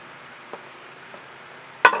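A loaded paint spatula set down on a small hard rest: one sharp clack near the end, with a faint tap about half a second in.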